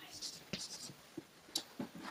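Chalk scratching on a blackboard in a few short, faint strokes as an arrow is drawn between two points on the board.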